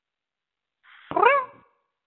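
A single meow about a second in, about half a second long, rising then falling in pitch, heard over a telephone line.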